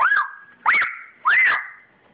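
A toddler's three short, high-pitched squeals, each rising then falling in pitch, about two-thirds of a second apart.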